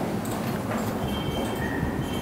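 Dry-erase marker writing on a whiteboard: short scratchy strokes and taps, with faint high squeaks in the second half, over a steady low background rumble.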